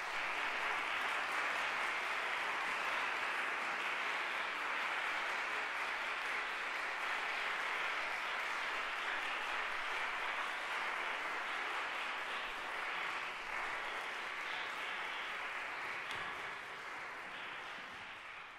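Audience applause: steady, dense clapping that eases off slightly near the end.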